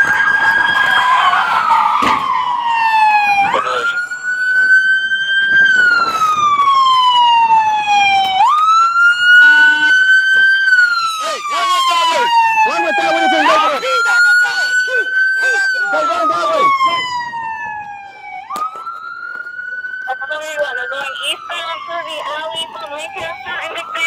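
Police car siren wailing: a tone that climbs quickly and then falls slowly, repeating about every five seconds. Short knocks and rustles from a body-worn camera on a moving officer come in between.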